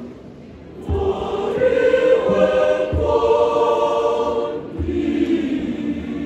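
Large choir singing in harmony, coming back in about a second after a brief lull, with low drum beats roughly every two seconds.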